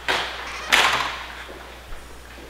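Two sudden, loud knocks, about two-thirds of a second apart, the second one louder, each trailing off briefly.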